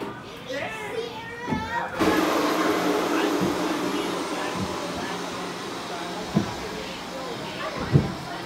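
Rushing, splashing water starts suddenly about two seconds in and stays loud, slowly easing, as the ride boat moves through churning water in its channel. A couple of short knocks come later on.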